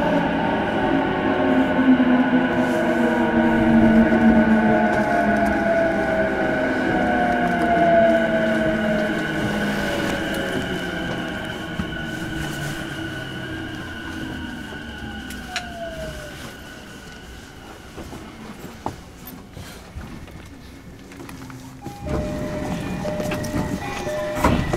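E233-series electric train motor car (MOHA E232) braking: the traction inverter and motors whine in several tones that glide down in pitch as the train slows, and the sound fades steadily. Near the end a different sound starts as the train comes to rest.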